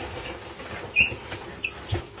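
Live crawfish sliding out of a cardboard box and clattering against a steel stockpot, with a sharp clink about a second in and a smaller one a little later.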